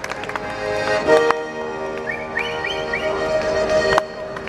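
Accordion playing held chords, with a quick run of short high notes about halfway through.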